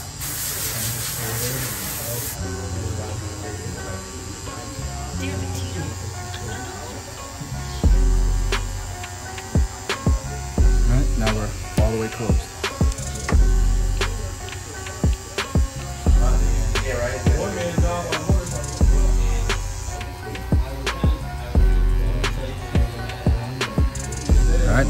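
An instrumental backing beat plays throughout. From about 8 seconds in it has deep bass hits every two to three seconds with sharp percussion clicks between them. Underneath is the buzz of a cordless hair trimmer cutting hair at the hairline, and a short hiss sounds in the first two seconds.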